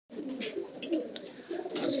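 Kasuri jaldar pigeons cooing, their low calls continuous and overlapping.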